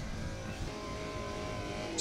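Electric motor of a power sofa running steadily as it drives the sofa out flat into a bed.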